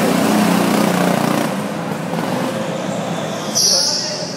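Go-kart running past, its motor drone loudest in the first second and a half, with a brief high hiss near the end.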